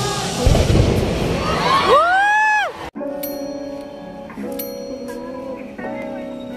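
Crowd hubbub with handling noise, then a single pitched whoop that rises and falls, cut off abruptly about three seconds in by soft background music with sustained, bell-like notes.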